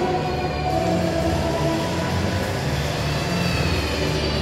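Steady low rumble of indoor shopping-mall ambience, with background music playing faintly over it.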